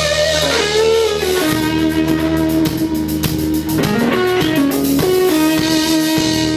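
Amplified Flying V electric guitar playing a lead: long held notes with string bends and wavering vibrato, after a low chord at the start.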